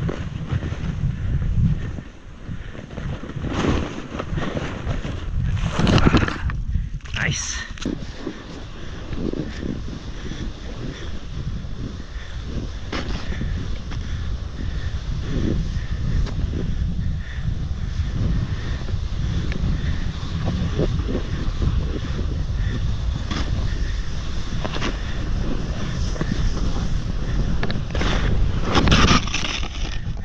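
Wind buffeting the microphone of a helmet-mounted camera while snowboarding, mixed with the scrape of the board sliding over snow. It turns into a steady rush about a third of the way in.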